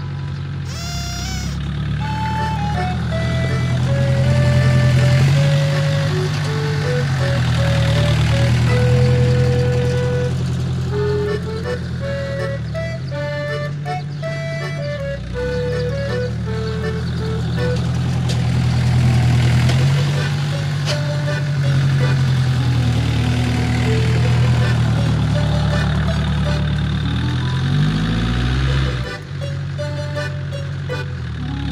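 Farm tractor engine working hard while clearing heavy snow, its pitch rising and falling in slow swells as it is revved and loaded, with a brief rev up and down near the end. Background music plays over it.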